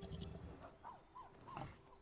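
Faint animal calls: several short calls that bend in pitch, over a row of quick, very high chirps and a low rumble.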